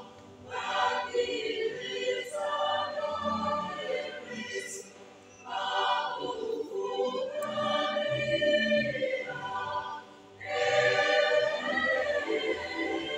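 Church choir singing a Luganda hymn in full voice, in phrases about five seconds long with short breaks between them.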